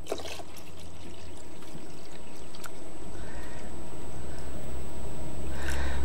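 Fresh water poured from a plastic jug into a coffee machine's water tank: one continuous pour that grows gradually louder as the tank fills to nearly full.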